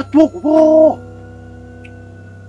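A man's voice speaking, ending on a drawn-out 'ooh' held for about half a second, then stopping about a second in; a steady background music drone goes on underneath.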